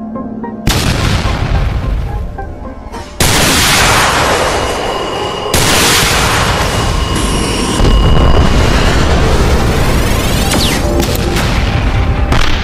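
Cartoon explosion sound effects: four heavy booms, each cutting in suddenly and dying away slowly, about two to three seconds apart, over background music.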